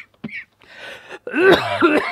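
A man coughing into a lapel microphone, close to the mic: a quieter rasp about half a second in, then loud harsh coughing through the last part. He puts the coughing down to his allergies.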